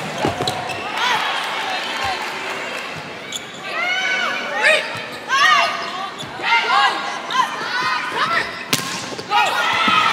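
Indoor volleyball rally: sharp hits of the ball at the start and again near the end, with athletic shoes squeaking on the court floor in quick clusters through the middle.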